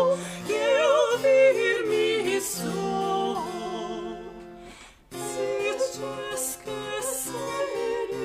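Soprano and mezzo-soprano singing an eighteenth-century Brazilian modinha in duet with vibrato, accompanied by spinet and guitar. The music fades to a brief pause just before five seconds in, then voices and accompaniment start again.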